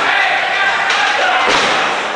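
Two thuds of wrestlers' bodies hitting in the ring, a lighter one about a second in and a heavier, deeper one soon after, over voices.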